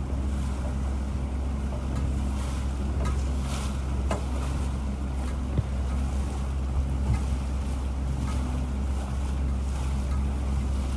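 A motorboat's engine runs steadily under way, a low drone, with wind buffeting the microphone and water noise over it. A few light knocks come in the first half.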